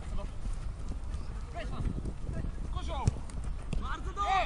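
Soccer players shouting to each other during open play, short calls a couple of times and again near the end, over scattered thuds of running feet and the ball on artificial turf.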